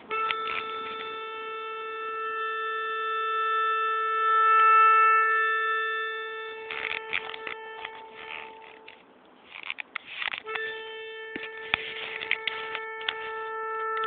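Melodica holding one long reed note that swells louder about halfway through, stops, then sounds again a second and a half later and is held to the end. Light clicks run through it.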